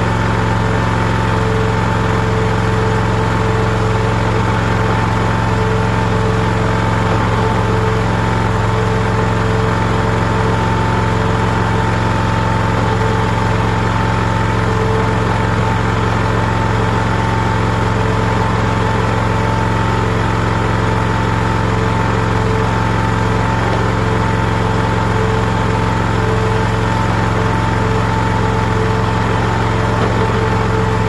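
Wolfe Ridge Pro 28C log splitter's engine running steadily at an even speed, a constant low hum with a steady higher tone over it.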